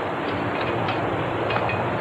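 Steady rushing noise of bicycles rolling along a concrete path, with a few faint clicks.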